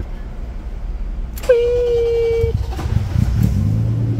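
BMW car engine being started warm: a steady starter whine for about a second, then the engine catches, rises briefly and settles into a steady low idle burble.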